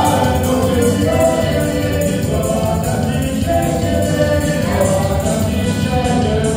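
Live folk dance band music: an accordion melody with held notes over guitar and drums keeping a steady dance beat.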